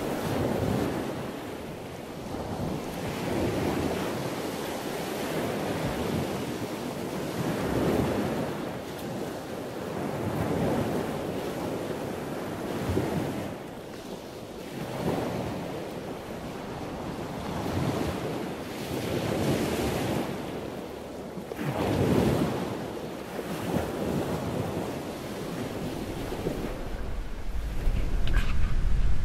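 Wind buffeting the microphone: a rushing noise that swells and fades every two to four seconds.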